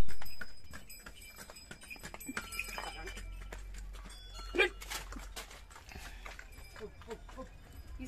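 Mule hooves clip-clopping on a paved road as a pair of mules walks past. There is a loud thump at the very start, and a brief louder sound about four and a half seconds in.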